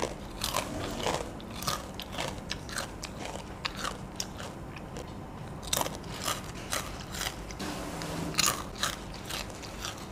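Crispy golden salted egg peyek (fried cracker with peanuts) being bitten and chewed close to the microphone: irregular crisp crunches, a few a second.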